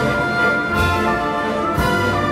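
Orchestra with brass playing a waltz, its strong downbeat falling about once a second.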